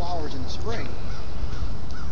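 Crows cawing, a quick series of short harsh calls, over a steady low wind rumble on the microphone.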